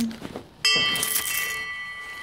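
A single bright metallic ring, like a small bell or chime, struck about half a second in and fading over about a second and a half.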